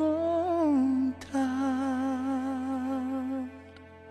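Male singer humming the closing notes of a ballad, one rising and falling phrase and then a long held note with vibrato, over a sustained backing chord. The music ends about three and a half seconds in.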